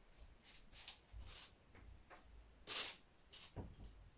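Faint scattered rustles and soft thumps of someone moving about and handling things away from the microphone, the loudest a brief rustle about three quarters of the way in.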